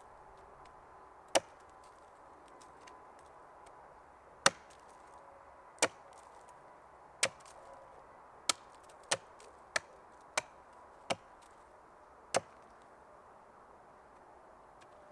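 Hatchet chopping into a wooden stake resting on a log: ten sharp strikes, a second or more apart at first, then about two a second in the second half.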